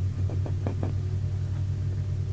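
A steady low hum under the recording, with a few faint clicks in the first second.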